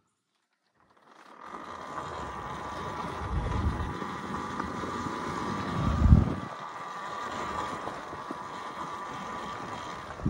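Talaria Sting MX4 electric dirt bike riding: a steady motor whine over tyre and trail noise, starting about a second in after silence. Two heavier low rumbles come about halfway through, the second the loudest.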